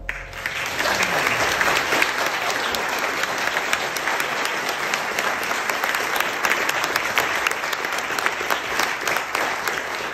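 Audience applauding steadily, many people clapping at once.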